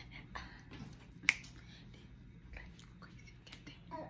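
A single sharp finger snap about a second in, against quiet room sound.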